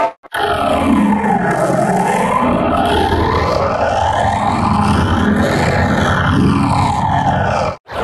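A startup jingle played back heavily distorted and pitched down, as in a 'G Major'-style audio-effect render, with tones that sweep up and down in arches. It begins after a brief dropout and cuts off shortly before the end.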